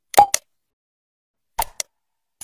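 Click sound effects of an animated subscribe button: a quick double click just after the start and another double click near the end, with silence between.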